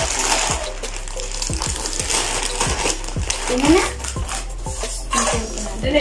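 French fries poured from a plastic bag into an air fryer basket: the bag crinkles while the fries clatter into the basket in a run of small knocks.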